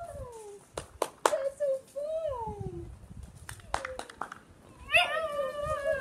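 High-pitched wordless vocalizing during rough play: short calls that slide down in pitch, then one longer held call about five seconds in, with several sharp smacks in between.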